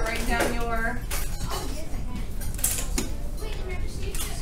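Children's voices chattering in a classroom, with scattered sharp clinks and clatters of small objects being handled at a magnet station, the brightest clatter a little past halfway.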